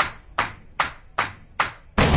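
A regular ticking, about two and a half sharp ticks a second, each dying away quickly.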